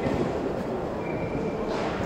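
Steady background din of a large, busy hall, a low even rumble of crowd noise with no single event standing out; a short high hiss comes near the end.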